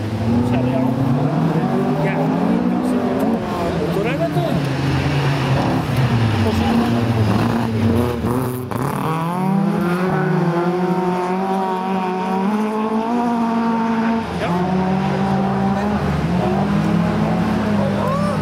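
Rallycross race cars' engines revving hard through a corner, the pitch climbing and dropping again and again as they accelerate and change gear.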